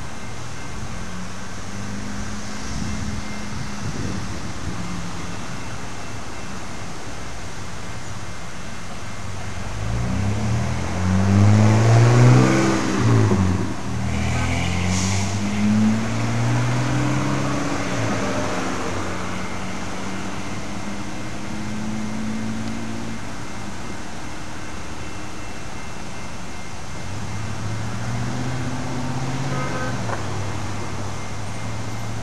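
A road vehicle passes close by about ten seconds in: its engine note rises, peaks, then falls in pitch as it goes away, over a steady low engine hum.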